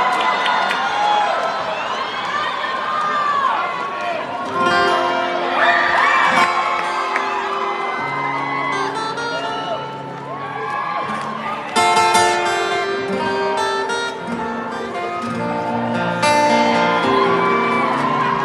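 Crowd cheering and whooping, then an acoustic guitar through the arena sound system picking notes and chords from about four seconds in, with shouts from the crowd still over it.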